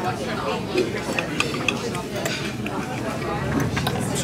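Knife and fork clinking and scraping on a ceramic plate as a pancake is cut, a few short clicks over the murmur of restaurant chatter.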